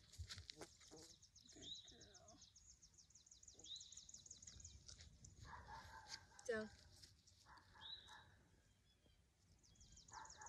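Faint birdsong in quiet open air: a fast, high trill through the first half, returning at the very end, with a few short rising chirps. A brief louder sound comes about six and a half seconds in.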